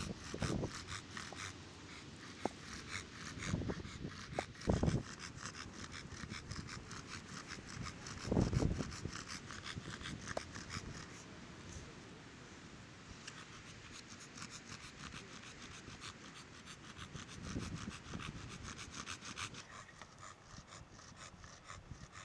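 An American Bully dog panting steadily through an open mouth, a quick, even rhythm of breaths. A few low thumps stand out about four, five and eight seconds in.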